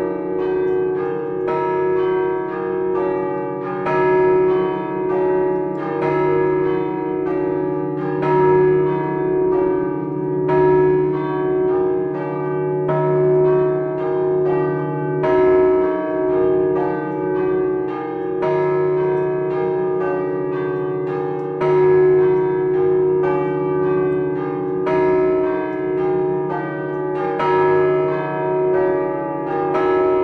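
Several large bronze tower bells rung by hand from a wooden lever frame, with chains pulling their clappers. They play a fast, continuous pattern of strokes whose tones ring on over each other, swelling in loudness about every two seconds.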